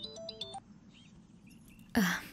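A melodic music cue of short single notes, fading out in the first half second. It is followed by a faint stretch with a few soft high chirps, and a brief rush of noise near the end.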